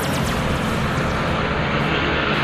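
Steady engine drone of passing motor traffic, continuous throughout with a low hum.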